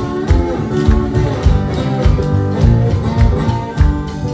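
Live blues played on stage, led by a strummed and picked steel-string acoustic guitar, with a regular low beat underneath and no singing.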